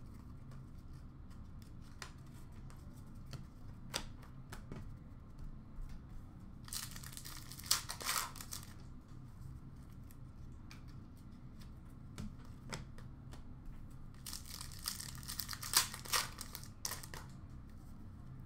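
Hockey card pack wrappers being torn open and crinkled, in two bursts about seven seconds in and again about fourteen seconds in, with light clicks and flicks of cards being handled between them.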